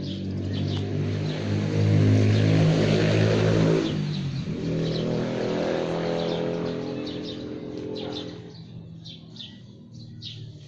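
A motor vehicle's engine passing by on the road, growing louder to a peak two to three seconds in, its note dropping about four seconds in as it goes past, then fading away. Birds chirp near the start and end.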